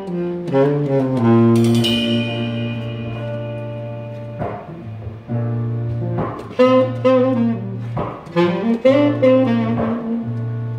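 Live jazz combo playing: saxophone carrying a slow melody over piano and drums, with sustained low bass notes underneath. A cymbal crash rings out about a second and a half in.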